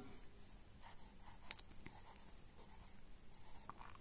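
Faint scratching of handwriting on a paper workbook page as a word is written into a blank, with a few short strokes.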